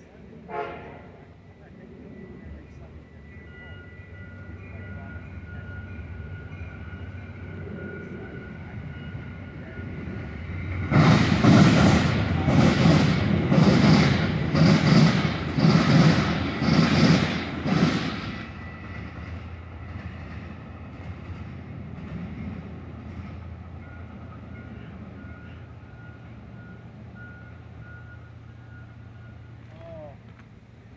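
Metra commuter train of bilevel passenger cars passing close by at speed. A low rumble builds, then comes a loud rush pulsing about once a second, seven times, as each car's wheels go by, before it drops back to a lower steady drone.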